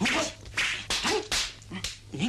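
Kung fu film fight sound effects: a rapid run of swishing, smacking blows, about six in two seconds. Short grunts from the fighters are mixed in.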